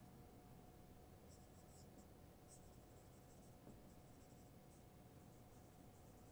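Faint squeak of a marker writing on a whiteboard, in a string of short strokes starting about a second in, over a faint steady hum of room tone.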